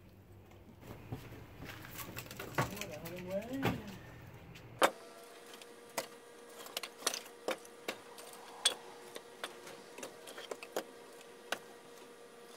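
Firewood pieces knocking and clattering as they are lifted and shifted off a woodpile: a string of irregular sharp knocks in the second half, with a faint steady hum behind them. A few voice-like sounds are heard in the first few seconds.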